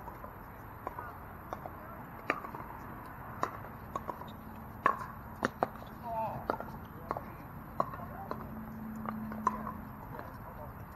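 Pickleball paddles hitting a plastic ball in a rally: a dozen or so sharp pops at irregular intervals, the loudest about five seconds in.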